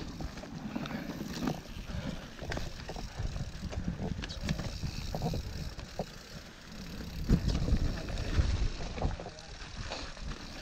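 Mountain bike riding down a rough dirt trail: tyres rumbling over the ground with frequent short knocks and rattles from the bike, louder for a moment past the middle.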